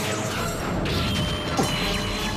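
Fight-scene sound effects of crashes and impacts over dramatic background music, with a sudden loud hit and a falling sweep about one and a half seconds in.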